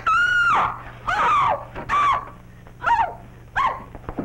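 Women shrieking as a fight breaks out: five short, high shrieks, each arching in pitch and then falling away.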